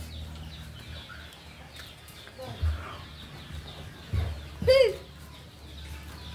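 A single short bird call, arching up and then down in pitch, about three-quarters of the way through, over a low steady background rumble.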